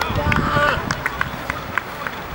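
Men shouting on an open football pitch just after a goal goes in, with one short held shout early on. Scattered short sharp knocks sound through it.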